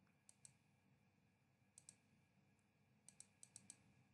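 Faint computer mouse clicks over near-silent room tone: a pair a fraction of a second in, another pair near two seconds, then a quick run of about six near the end.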